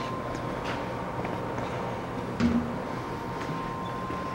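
Steady hum with a thin, high, steady whine. A single brief clack about two and a half seconds in as the steel electrical cabinet door is unlatched and swung open.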